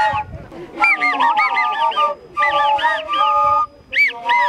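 An ensemble of Andean cane flutes playing a high, reedy melody, several instruments together with sliding, arching notes. It starts about a second in, with short breaks between phrases.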